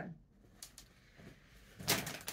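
Clothing being handled: faint rustles of fabric, then a brief louder rustle near the end as a garment is moved.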